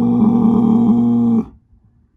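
Angus bull bellowing: one long, low-pitched call on a steady pitch that stops about one and a half seconds in.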